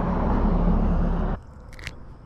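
Low, loud rumble of road traffic, a passing vehicle's engine, that cuts off abruptly a little over a second in. After it, quieter, with a couple of faint clicks.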